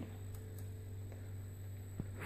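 Quiet room tone with a steady low hum, and a faint click near the end.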